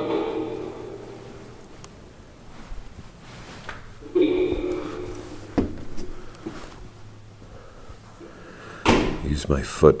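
Wooden door creaking on its hinges as it is pushed open: a drawn-out creak at the start and a second one about four seconds in, followed by a short click. A man's voice starts near the end.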